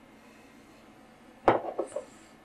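Near silence, then about one and a half seconds in a sharp click followed by a few lighter knocks: a small hard object, a tool or the varnish bottle, handled and set down on the tying desk.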